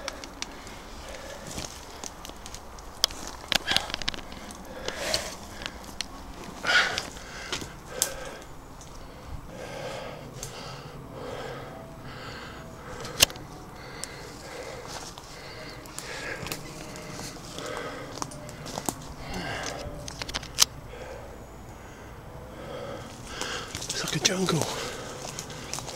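Footsteps crunching through dry leaf litter, with twigs and branches cracking and brushing as someone pushes through woodland undergrowth. Short bird calls come and go in the background.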